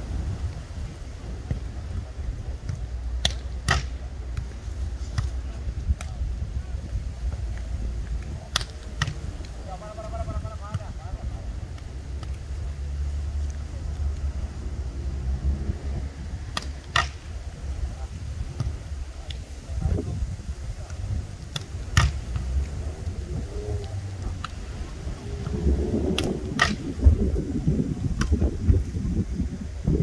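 Beach volleyballs being struck by players' hands and arms: sharp slaps at irregular intervals of a few seconds, the loudest near the end. Faint voices at times, over a steady low rumble.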